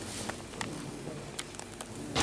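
Quiet indoor bocce hall: steady low room noise with about five faint, sharp clicks scattered through it.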